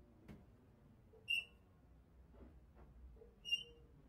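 Two brief, high-pitched, whistle-like squeaks about two seconds apart, over low background hiss.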